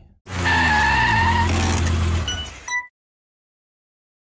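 A vehicle running: a steady low engine note under a high squealing whine that falls slightly in pitch, cut off abruptly after under three seconds.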